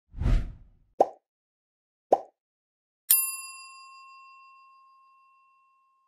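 Sound effects for an animated end screen: a low whoosh, two short pops about a second apart, then a bright bell-like ding that rings out and fades over about two seconds.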